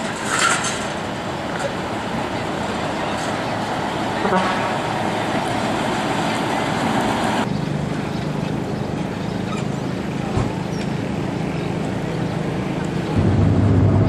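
Outdoor street background of steady traffic noise, with a brief burst of voices or a call shortly after the start. After a cut about halfway through, a steady low engine drone takes over.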